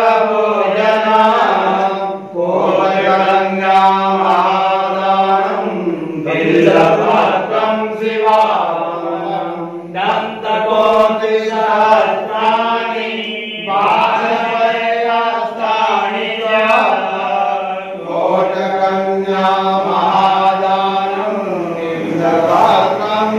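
Male voices chanting Hindu devotional mantras in phrases of a few seconds each, over a steady low hum that holds through the pauses between phrases.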